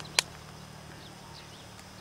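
A single sharp knock a moment in, preceded by a smaller click, then a faint steady background.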